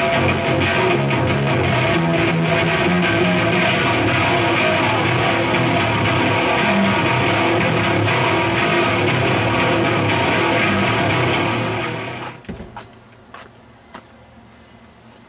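Loud distorted electric guitar playing heavy grindcore riffs during a recording take. It stops about twelve seconds in.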